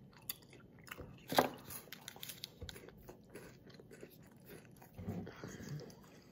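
A person chewing a crunchy Kit Kat wafer bar close to the microphone: scattered small crunches and mouth clicks, with one louder crunch about a second and a half in.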